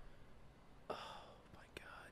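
Near silence, with a man whispering "oh my God" about a second in.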